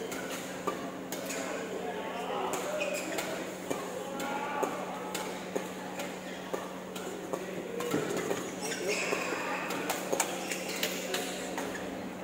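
Badminton hall sounds: sharp racket-on-shuttlecock strikes at irregular times from rallies on the courts, over chatter of voices and a steady low hum.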